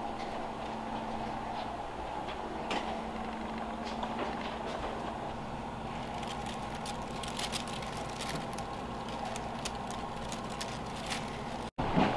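Steady background hum and noise, with faint scattered clicks in the second half.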